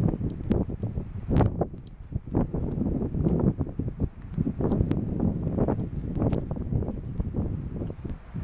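Wind buffeting the microphone in an uneven low rumble, with scattered sharp clicks and knocks of Alpine ibex hooves on rock and loose stones.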